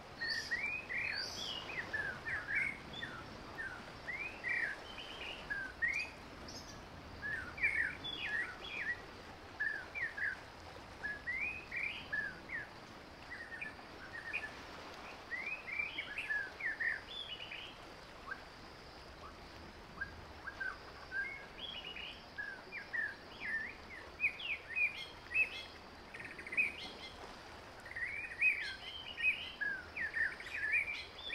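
Small birds chirping: many short, quick chirps in irregular runs over a steady faint hiss.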